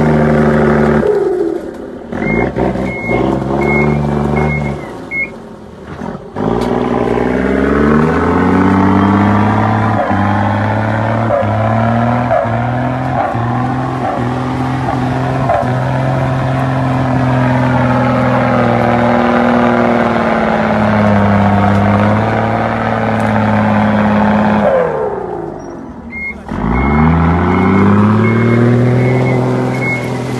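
Bus diesel engine revving hard and easing off over and over, working to drive the bus out of mud. In two lulls, near the start and near the end, the engine drops to a low idle and a high beeper sounds about twice a second.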